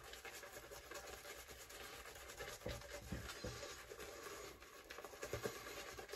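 Shaving brush with a cashmere knot working lather on the face: faint, irregular scrubbing of the bristles through the lather on the skin.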